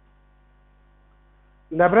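Low, steady electrical mains hum with a few faint steady tones above it, in a pause between words. A man's voice starts speaking again near the end.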